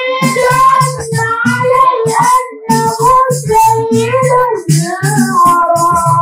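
A young male voice singing an Islamic devotional chant into a microphone, holding long, wavering notes, over a drum and jingling percussion beating about twice a second.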